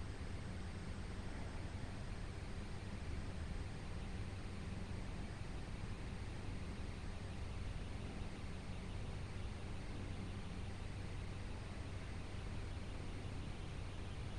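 Steady, quiet background noise: an even hiss with a low hum underneath, unchanging and with no distinct events.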